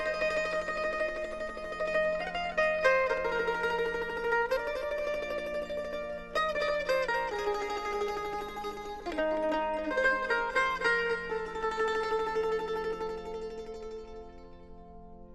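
Instrumental devotional music: a plucked string instrument plays a slow melody of ringing notes over a steady low drone, getting quieter near the end.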